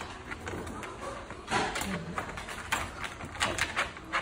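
Dog whining briefly in a wire crate, one short falling whine about halfway through, with several sharp clicks as he moves about in the crate.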